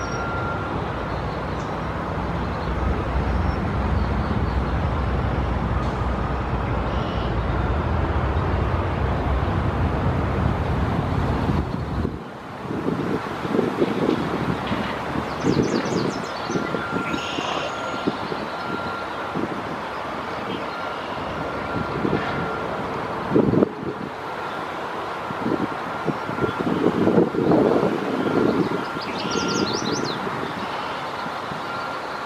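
Road traffic on a highway bridge: a steady low rumble of passing vehicles that drops away suddenly about twelve seconds in, followed by irregular bumps and knocks. A few short high bird chirps come at the start, midway and near the end.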